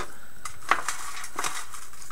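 Fingers rummaging through folded paper slips in a metal tin: a few short rustles and light clicks against the tin, the sharpest about two-thirds of a second in.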